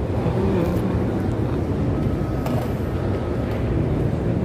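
Steady low rumbling outdoor background noise, with a faint thin tone through the middle.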